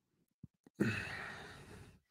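A man sighing, a long breath out into a close microphone that starts about a second in and fades away, after a couple of faint mouth clicks.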